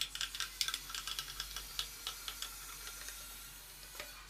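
Rapid light clicking, several ticks a second, from a fastener being tightened on the plastic cover-plate frame of a concealed flush cistern, thinning out and dying away about two and a half seconds in.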